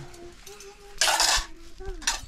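Metal spoon scraping and clinking against a metal pot and plates as rice is dished out, with one loud scrape about a second in lasting about half a second.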